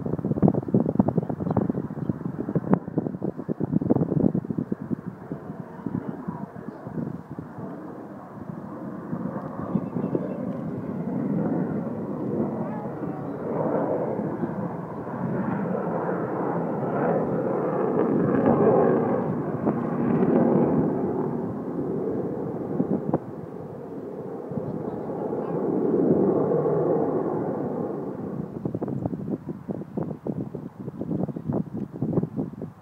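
Avro Vulcan's four Rolls-Royce Olympus jet engines rumbling in the distance, swelling and fading as the bomber passes, with wind buffeting the microphone in the first few seconds.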